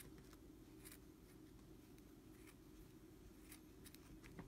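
A few faint, irregularly spaced snips of small scissors cutting into a bundle of acrylic yarn to trim a pom-pom, over a low steady room hum. The small scissors are struggling to cut through the yarn.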